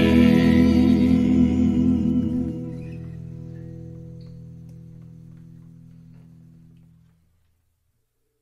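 Closing chord of a doo-wop song played and sung by a small band with harmony voices and electric guitar, held and then fading away, dropping off about two and a half seconds in and dying out about seven seconds in.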